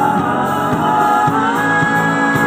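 Live band music: a woman singing a ballad with band accompaniment, with sustained sung notes, recorded from the audience.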